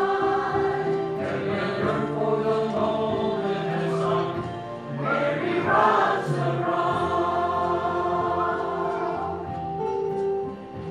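Mixed choir of men and women singing in parts, holding long notes.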